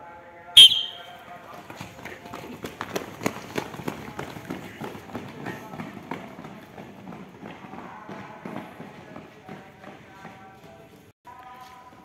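A group of boys sprinting on brick paving: a dense patter of many quick footsteps that thins out towards the end. About half a second in, a single short, loud, sharp sound sets them off.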